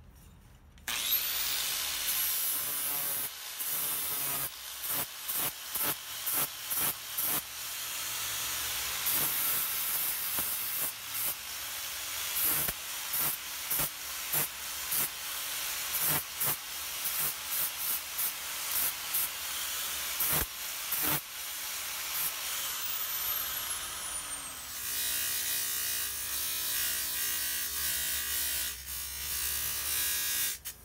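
Electric angle grinder spinning up about a second in and grinding the tool-steel blade of a small pair of hand-forged tin snips, in short passes with many brief breaks as the disc touches and lifts off the steel. It winds down with a falling whine near the three-quarter mark, and a steadier motor sound with a hum, typical of a bench grinder or buffing wheel, takes over for the last few seconds.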